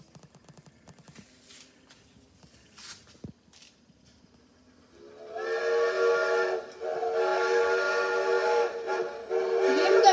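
A GPX CD boombox playing a recorded steam train whistle, several pitches sounding together in three long blasts that begin about five seconds in, as the opening of a train song. Before the whistle, only a few faint clicks.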